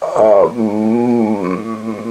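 A man's long, drawn-out hesitation sound, a held "uhh" in a low voice with slowly wavering pitch, lasting about two seconds without words.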